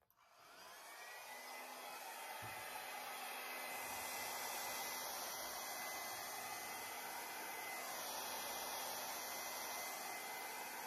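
Small handheld hair dryer switched on and running steadily, its airflow rising to full over the first second or two, with a thin steady whine above the rush of air. It is blowing wet acrylic paint out across a canvas in a Dutch pour.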